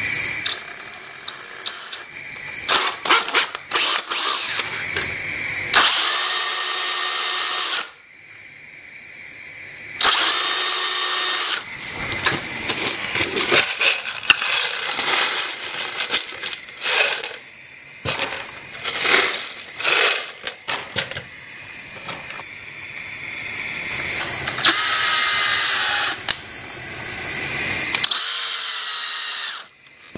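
A handheld power tool running in short bursts of a second or two, each a steady whine that starts and stops abruptly, with clicking and clattering of tools between the bursts.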